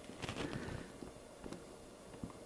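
Faint handling sounds: a few soft clicks and rustles as fingers press a small circuit board and taped cable onto a plastic model-locomotive body, a little cluster near the start and one more tick about halfway.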